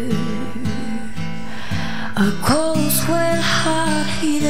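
A young female singer's voice singing a slow ballad over an acoustic guitar accompaniment, with a swooping sung note about halfway through.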